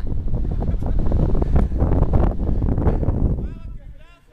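Wind buffeting an action camera's microphone as a rope jumper swings through the air on the rope: a loud, gusty rush that dies down near the end. A brief shout is heard near the end.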